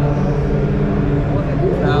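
Steady low mechanical hum in a large hall, with a man's voice starting near the end.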